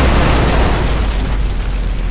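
Explosion boom: a deep rumble and hiss that slowly die away.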